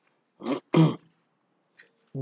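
A man clearing his throat: two short voiced rasps in quick succession, a little under a second in.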